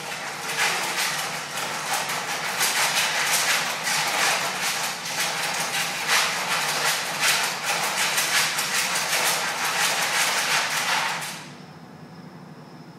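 Metal wire dog crate rattling and clattering in a dense, continuous run as a Basenji paws and pushes at it, trying to get out; it stops abruptly near the end.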